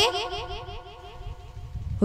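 A child's voice in a rapid run of short, laughter-like repeated syllables, about five a second, fading away, over a steady held tone.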